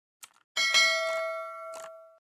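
Subscribe-animation sound effects: a short mouse click, then a notification-bell ding that strikes sharply and rings on, fading over about a second and a half.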